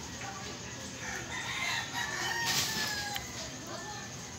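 A rooster crowing once, a single long call starting about a second in and ending a little after three seconds.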